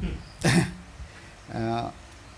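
A man clears his throat once, a short burst about half a second in, then utters a brief 'eh' near the end.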